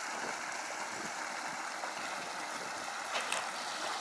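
Steady rush of running water, an even noise with no pitch to it, with a couple of faint clicks near the end.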